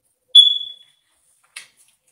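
A single short, high-pitched ding about a third of a second in: a clear tone that rings out and fades within about half a second. A faint click follows near the end.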